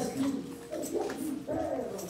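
A woman's voice making low, drawn-out murmuring sounds in three short stretches, the words not made out.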